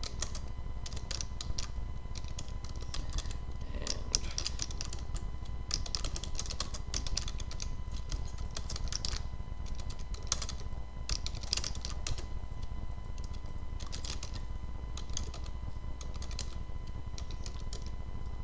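Computer keyboard typing: irregular runs of keystrokes with short pauses between them, over a steady low hum.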